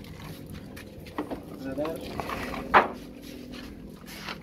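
Faint background voices, with one short, loud sound near three seconds in.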